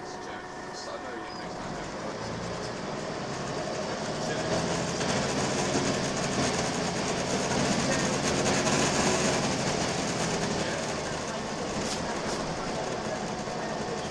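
Volvo B10BLE single-decker bus heard from inside the passenger saloon while under way: diesel engine and road rumble, the engine note building over several seconds as the bus pulls along, then easing off.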